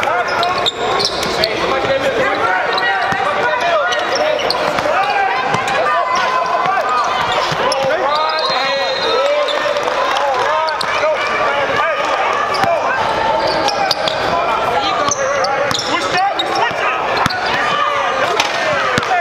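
Live game sound of basketball in a gym: the ball bouncing and sneakers squeaking on the court in quick short squeaks, over the voices of players and spectators echoing in the hall.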